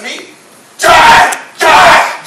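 A man's voice yelling twice, loud shouts of about half a second each.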